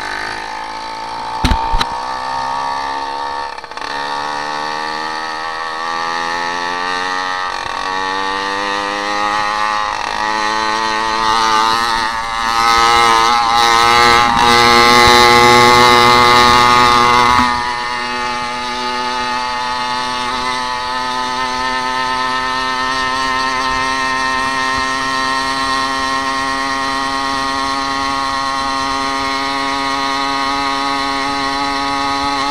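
Small two-stroke engine of a motorized bicycle running under way, its pitch climbing over the first several seconds as the bike picks up speed. It grows louder and noisier for about five seconds before the middle, then settles back to a steady cruise. A couple of sharp knocks come about a second and a half in.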